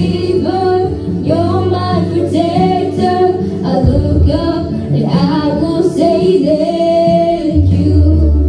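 A girl singing a worship song into a microphone over sustained instrumental accompaniment.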